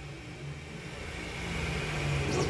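GTMAX3D Core A3V2 3D printer running mid-print: its stepper motors and fans make a steady low, pitched hum that grows louder over the two seconds.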